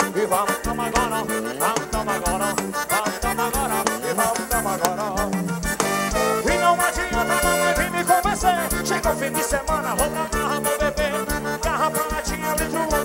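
Live forró band playing loud: a steady, driving drum beat and bass under a melody line with sliding, bending notes.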